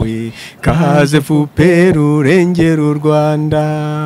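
A man chanting into a microphone in a sing-song voice, several short phrases then one long held note near the end.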